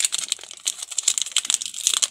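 Plastic wrapper of a small Parle Hide & Seek biscuit packet crinkling in rapid, dense crackles as it is handled and pulled open by hand.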